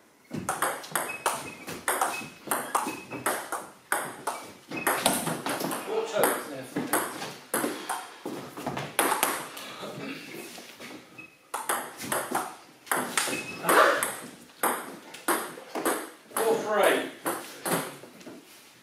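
Table tennis rally on a Cornilleau 740 table: the ball clicks back and forth off the bats and the table top in a quick, even rhythm. A brief pause comes about eleven seconds in, then another rally follows.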